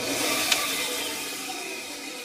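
Bandsaw switched on and running: a whirring hiss with a few steady tones that peaks about half a second in and then slowly fades.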